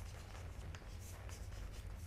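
Faint scratching and tapping of chalk on a blackboard as a short phrase is written, over a low steady hum.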